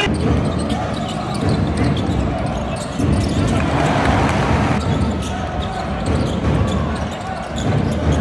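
Live basketball game sound: a ball bouncing on the court with short sharp clicks of play, over steady arena crowd noise and voices.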